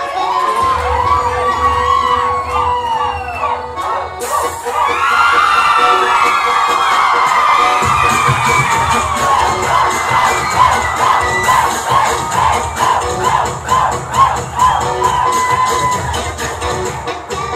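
A crowd of party guests cheering, shouting and whooping over dance music with a steady beat. The cheering swells suddenly about four seconds in.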